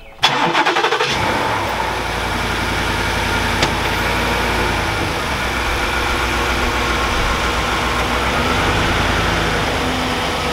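Ford pickup truck's engine cranking briefly and catching, then settling into a steady idle. A single short click comes about three and a half seconds in.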